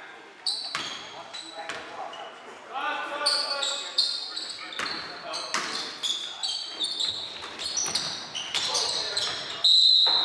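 A basketball bouncing on a hardwood gym floor among many short, high sneaker squeaks, with players calling out in a reverberant gym; the loudest squeak comes near the end.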